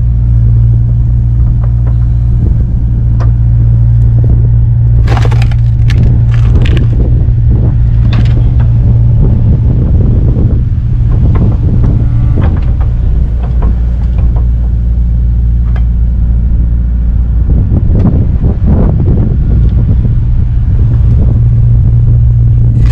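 Kubota KX057-4 excavator's diesel engine running steadily under hydraulic load while its Split Fire 4209 splitter wedge is driven through oak and cherry rounds. Wood cracks sharply several times about five to eight seconds in, then crunches and splits in longer stretches around ten and eighteen seconds in.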